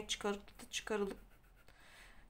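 A woman speaking for about the first second, then a quiet pause with faint rubbing of a pen against notebook paper.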